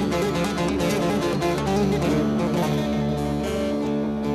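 Bağlama (Turkish long-necked saz) playing a quick run of plucked notes over a steady low drone: an instrumental passage in a Turkish folk song.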